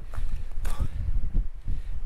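Footsteps on a coastal walking path, a few scuffs and knocks, over an uneven low rumble of wind on the camera microphone.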